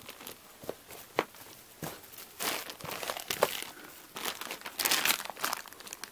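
Plastic baggie crinkling in a hand in irregular bursts, loudest about halfway through and again near the end, among scattered clicks and scuffs as someone gets up and moves.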